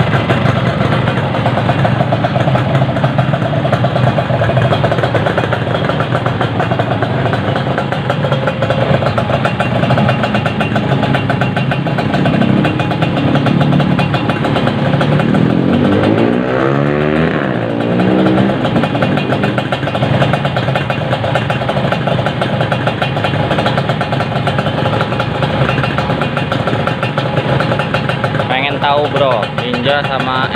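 Two two-stroke motorcycle engines, a Yamaha RX King and a Kawasaki Ninja 150, running steadily together at idle during a side-by-side fuel-consumption test, with the fast crackling rattle of two-stroke singles and twins.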